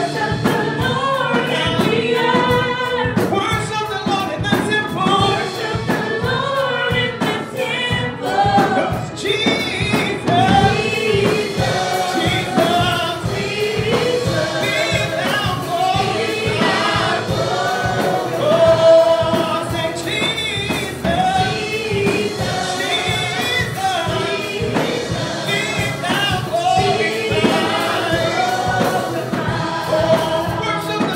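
Gospel choir singing with instrumental accompaniment and a steady beat.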